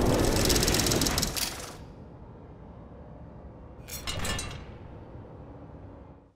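Produced sound effects under an animated title graphic: a loud, dense mechanical rattle over a low rumble that fades after about two seconds, then a second, shorter rattling burst about four seconds in.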